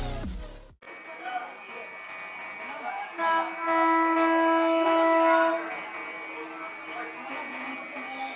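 Train horn of an approaching electric locomotive, sounded once from a distance in a single held blast of about two and a half seconds, a few seconds in. It is the warning of a train running through the station without stopping.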